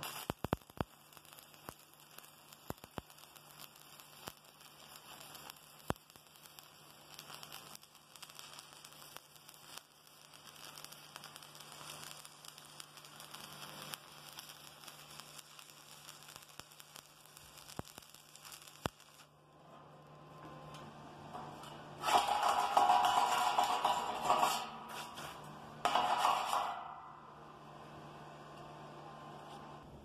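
Stick (shielded metal arc) welding with a 3/32-inch electrode on thin 14-gauge steel tube: the arc crackles and sputters with scattered pops over a steady low hum. Two much louder bursts of crackle come about three quarters of the way through.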